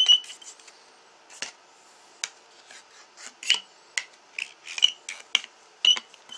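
A dart point scratching across the surface of a DVD in short, irregular scraping strokes, some of them squeaking thinly, gouging the disc so it can no longer be played.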